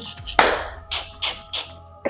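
A man laughing in a sharp first burst and then three or four short, breathy bursts that fade away, over faint steady background music.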